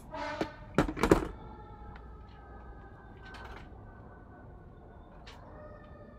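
A few knocks about a second in as plastic wall clocks are handled and set down, followed by faint steady tones with a few small clicks.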